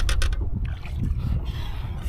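A spotted bass splashing as it is lifted by hand from the water beside a boat: a quick cluster of sharp sounds at the start, then smaller ones. Steady wind rumble on the microphone underneath.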